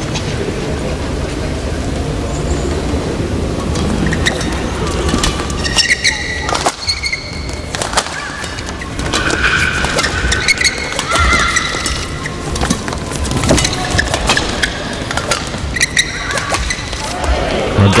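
Badminton rally in an indoor hall: after a few seconds of low crowd murmur, rackets strike the shuttlecock again and again from about four seconds in, with the players' shoes squeaking on the court mat between shots.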